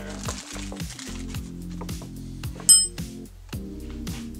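Background music with a steady beat. About two-thirds of the way in, one short, sharp metallic clink with a high ring, as the lid of a small metal can of wood stain is pried off.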